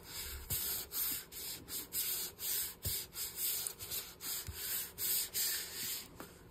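Hands rubbing back and forth over a paper tag to press a freshly glued image down flat. It comes as a quick, even run of dry rubbing strokes, about two to three a second.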